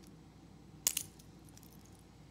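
Metal links of a two-tone steel-and-gold jubilee watch bracelet clinking as the watch is picked up and handled: one quick cluster of metallic clicks a little under a second in.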